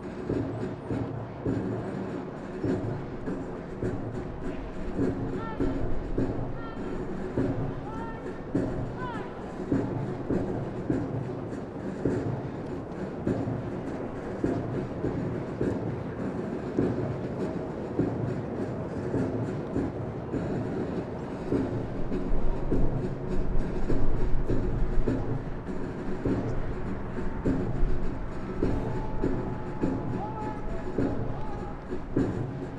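A large formation of trainees marching in step on pavement: the steady, rhythmic tramp of many boots striking together, with some held musical tones underneath.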